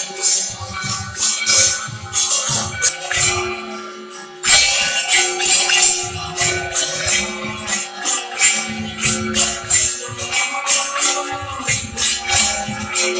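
Devotional aarti music: rhythmic metal jingling and clashing, like hand cymbals and bells, over regular low drum beats, with a held tone underneath. It grows suddenly louder about four and a half seconds in.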